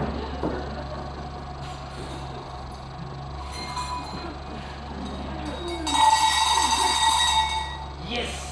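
A bell ringing: a faint, brief ring about three and a half seconds in, then a much louder, sustained ringing from about six seconds in that fades away just before the end.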